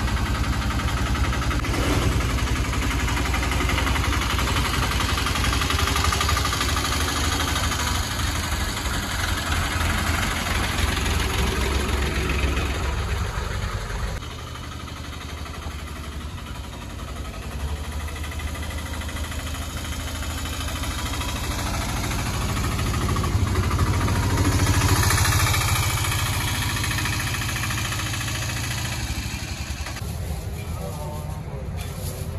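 Auto-rickshaw engine running steadily at idle with a low hum. After a sudden drop in level, the three-wheeler drives up, its engine growing louder to a peak about 25 seconds in, then fading as it passes.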